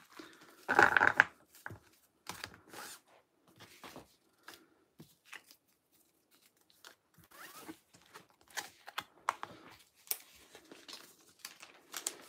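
Paper cards and a clear plastic sleeve being handled on a table: a string of short rustles and taps as the cards are gathered and stacked, the loudest about a second in, with a quiet pause in the middle.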